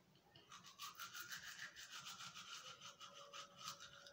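Faint, quick, rhythmic brushing strokes, bristles scrubbing back and forth, starting about half a second in and stopping just before the end.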